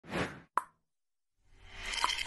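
Intro-animation sound effects: a short burst of noise, then a single sharp pop about half a second in, a moment of silence, and a wash of noise swelling up toward the end.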